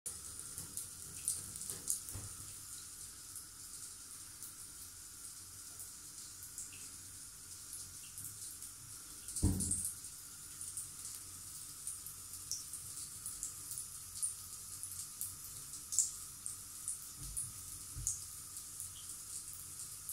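Faint, steady trickle of water in a bathtub, with scattered light ticks and one dull thump about halfway through.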